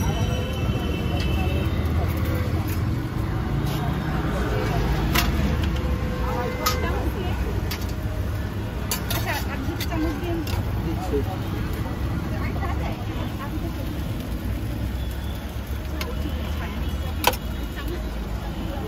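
Street noise: a steady low traffic rumble with voices in the background, and a few sharp clinks of metal tongs on a metal pan and plate as fried noodles are served, the loudest near the end.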